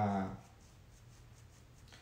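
A man's speaking voice trails off at the very start, followed by a pause with only faint room noise.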